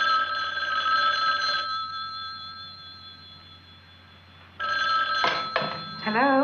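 Telephone bell ringing twice: the first ring fades out over a couple of seconds, and the second ring is cut short by two sharp clicks about five seconds in.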